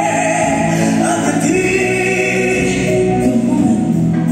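Live band music with a man and a woman singing together, holding long sung notes over the accompaniment.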